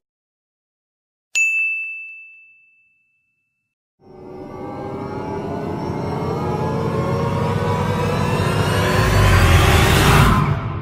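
Edited-in sound effects: a single bright ding rings out and fades over about a second and a half. From about four seconds in, a swelling riser builds steadily louder and slightly higher in pitch, peaking near the end.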